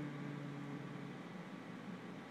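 Steady hiss of room background noise, with a low steady hum that fades out about a second in.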